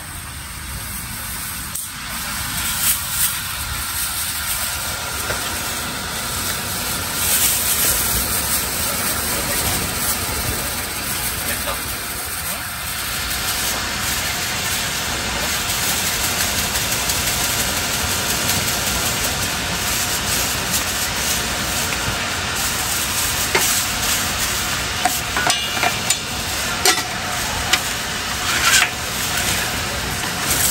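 Steady hiss of food sizzling at a street-food stall, with voices in the background and sharp clinks and clicks of utensils in the last several seconds.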